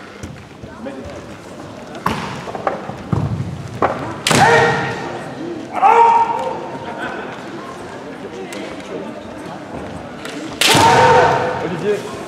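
Kendo players' kiai: loud drawn-out shouts, three of them (about 4 s in, about 6 s in and near the end), with a few sharp knocks of shinai or stamping feet on the wooden floor before them.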